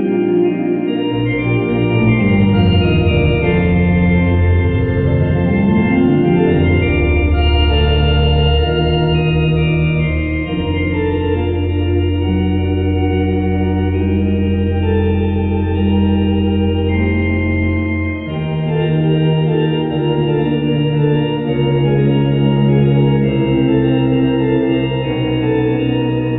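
Sampled vintage Thomas console organ through a Leslie speaker, played as held, slowly changing chords over a sustained low bass. In the first few seconds a low pitch sweeps down and back up.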